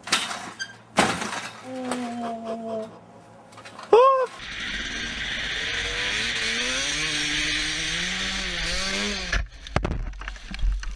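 Dirt bike engine revving under a helmet-mounted camera, its pitch rising and dipping over a steady rush of wind, for most of the second half; it cuts off suddenly near the end. Before it come a few sharp knocks and a short rising yell.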